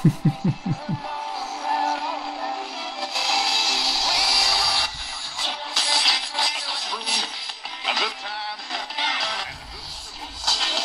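Music with singing from an AM broadcast station played through the small speaker of a Horologe HXT-201 pocket AM/FM radio. It sounds thin, with no bass, after a man's brief laugh at the start.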